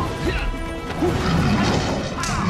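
Fight-scene soundtrack: music under sudden punch-and-crash sound effects, with fighters' shouts.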